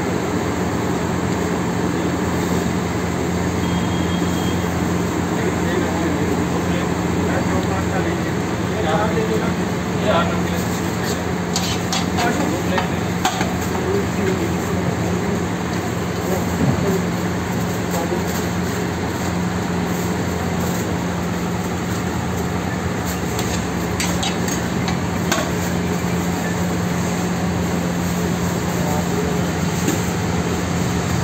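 Kulchas frying with onions and tomatoes on a large tawa griddle: a steady sizzle over a constant low hum, with short clinks and scrapes of a metal spatula on the griddle now and then, most of them in the middle and near the end.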